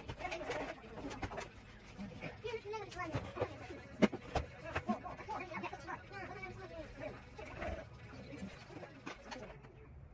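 Quiet, indistinct talking with scattered clicks and knocks, the loudest a single sharp click about four seconds in.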